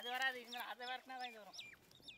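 Chickens calling: a run of short clucking calls, with high, falling peeps over them.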